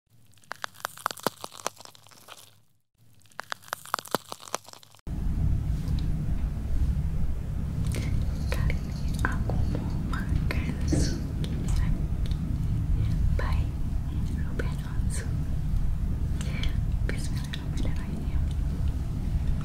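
Sharp crisp clicks and crunch-like snaps for the first few seconds, then from about five seconds in a steady low hum of room noise with faint scattered mouth clicks and small taps.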